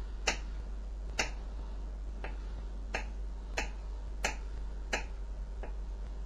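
A kitchen knife chopping a thin rope of stiff dough into small pieces. Each cut ends in a sharp tap of the blade on the board, about eight in all, a little over one a second and not quite evenly spaced.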